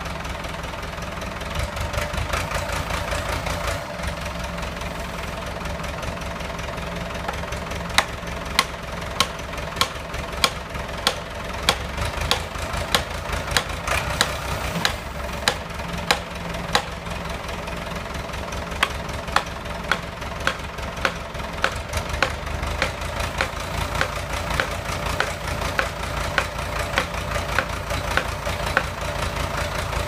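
Tractor engine running steadily, powering the hydraulics of a forestry crane. From about eight seconds in, a series of sharp knocks sounds over it, roughly one a second.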